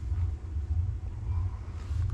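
Steady low rumble of a parked tour bus's idling engine, heard from inside the cabin.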